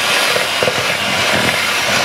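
Electric hand mixer running steadily, its beaters churning a crumbly almond-flour dough in a mixing bowl.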